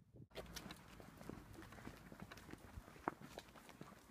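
Faint footsteps on pavement, an irregular run of small clicks and scuffs that starts abruptly about a third of a second in.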